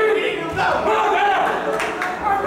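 Crowd of spectators shouting and yelling encouragement at boxers, many voices overlapping, with one sharp smack near the end.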